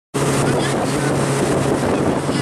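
Fishing boat's engine running steadily with a low hum, under the rush of wind on the microphone.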